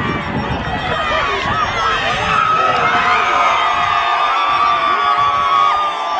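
Football supporters cheering and shouting together in celebration of a goal, with one voice holding a long high cry through most of it.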